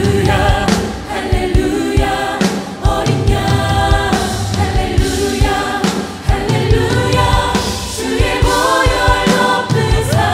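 Live contemporary worship music: a group of singers sings a praise song together over a full band, with drums keeping a steady beat.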